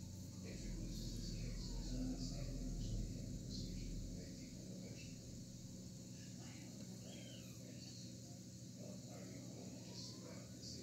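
Quiet room noise with a faint low rumble during the first few seconds, and faint, indistinct voice-like sounds in the background.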